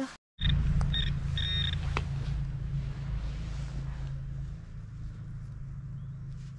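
Metal detector pinpointer giving short high electronic beeps, three in the first two seconds, the last a little longer, signalling a metal target (a coin) in the soil. A steady low rumble runs underneath.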